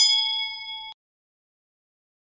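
Notification-bell 'ding' sound effect from a subscribe-button animation: one bright metallic chime of several tones that fades for about a second and then cuts off abruptly.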